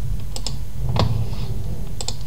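Computer mouse clicks: a quick pair about half a second in, then a single louder click about a second in, over a steady low hum.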